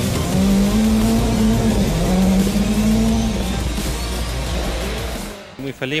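Rally car engine running at high revs on a gravel stage, mixed with background music. Both cut off suddenly near the end, where a man starts to speak.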